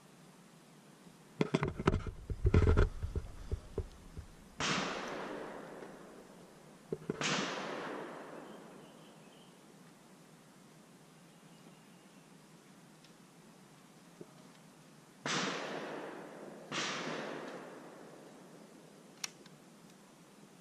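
.22 caliber rifle shots, four in all: two about two and a half seconds apart, then some eight seconds later two more about a second and a half apart. Each is a sharp crack followed by an echo that fades over two to three seconds. Before the first shot there is a short flurry of heavy, low knocks and bumps.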